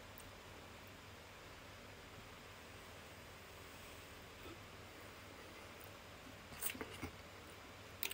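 Quiet room tone with a faint steady hum, then a few brief clicks and rustles near the end as a small plastic milkshake bottle and its lid are handled.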